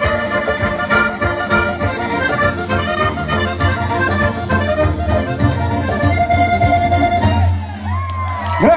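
Accordion playing a Sardinian folk dance tune in quick notes over a steady low bass, with guitar accompaniment; the tune closes on a long held note and stops near the end.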